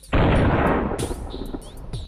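A sudden loud explosion sound effect that bursts in at once and fades over about a second, over electronic music with drum machine and gliding synth tones.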